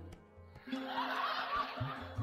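An audience laughing and chuckling, coming in just under a second after a brief near-silence, quieter than the talk around it. Soft background music with a steady drone runs under it.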